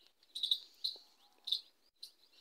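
A small bird chirping in the background: three short, high chirps within about a second and a half.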